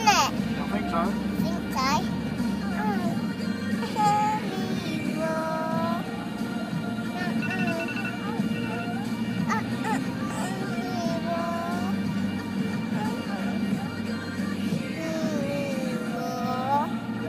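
A pop song plays inside a car while a young child sings along in a high voice, holding and bending long notes.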